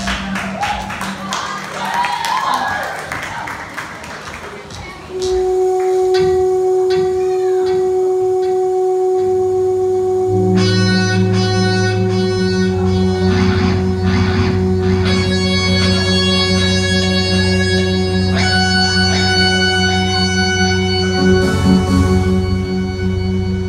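A live band starting its opening song: a long held note comes in about five seconds in, and a low bass line and electric guitar join about halfway through, making the music louder.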